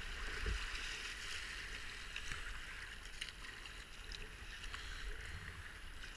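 River water rushing through a rapid, a steady hiss of whitewater heard from a kayak at water level, with a few faint splashes.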